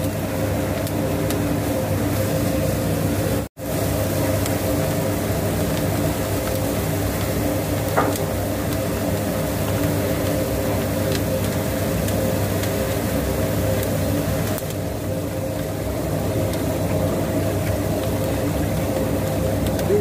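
Puffed-rice (muri) making machine running steadily while rice is fed through it: a constant mechanical hum with a brief cut-out about three and a half seconds in.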